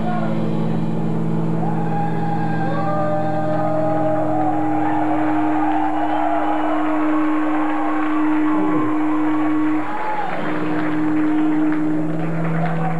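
Amplified guitars and bass of a live metal band holding a sustained droning chord after the drums have stopped, with shouting voices wavering over it. The low drone breaks off briefly near the end and comes back in.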